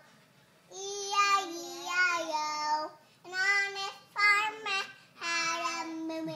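A small girl singing a nursery song unaccompanied: after a short pause she sings four phrases, with long held notes.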